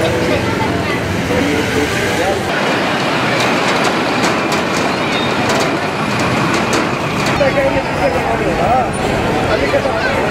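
Busy street ambience: many voices chattering over the running of motorcycles, buses and other vehicles in heavy traffic. The background changes about two and a half seconds in, and scattered short clicks and knocks come through in the middle.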